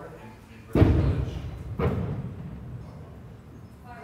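Two heavy thumps about a second apart, the first the louder, each with a low ringing decay.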